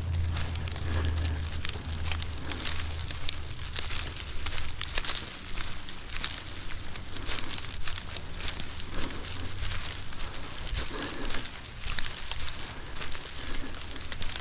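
Dry pampas grass stalks rustling and crackling continuously as the tied bundle is carried, the stiff stems rubbing against each other close to the microphone, with a low rumble in the first few seconds.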